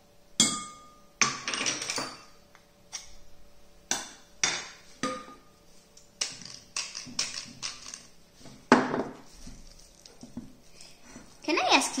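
A metal spoon clinking against a glass mixing bowl, some strikes leaving a short ring. About halfway in comes a pepper mill grinding over the bowl in a quick run of ticks, then one loud knock.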